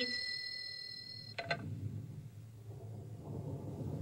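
An old rotary desk telephone ringing, a steady high-pitched ring, cuts off with a click about a second in. A low rumble then builds, heard through a television's speakers in a hall.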